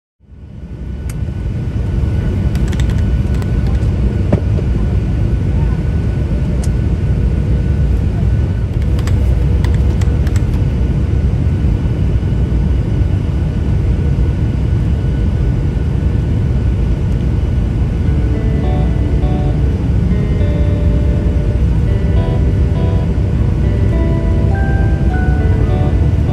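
Steady low rumble of a passenger jet's cabin during descent toward the runway, with a few faint clicks in the first half. A soft mallet-percussion melody of background music comes in about three quarters of the way through.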